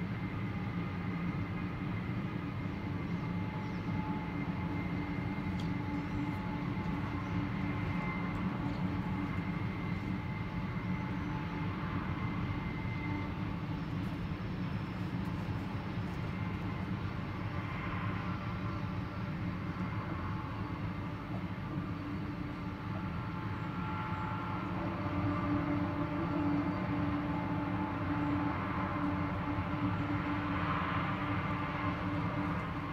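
Loaded tank cars of an oil train rolling past on the rails: a steady, continuous rumble with a few faint thin high tones running over it.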